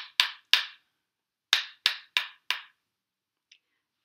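Wooden percussion sticks (claves) tapped together in two groups of four quick taps with a short pause between them. The taps play the rhythm of the phrase "shoo-be-dee-doo" twice.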